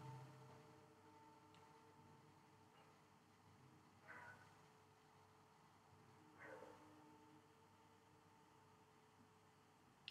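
Near silence: room tone, with two faint, brief sounds about four and six and a half seconds in.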